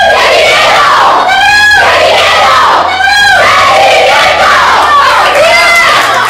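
A group of women shouting a team chant together in a huddle, loud, with high calls repeated in a steady rhythm about every second and a half.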